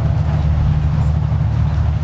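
Steady low rumble with an even hiss over it, typical of wind buffeting an outdoor microphone.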